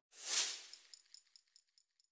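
An edited-in sound effect: a short noisy swell that peaks about a third of a second in, then trails off into a string of faint, fading high tinkles.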